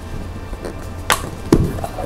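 A carbon fin blade being pushed into a rubber foot pocket. A sharp snap comes about a second in, and a duller knock follows about half a second later.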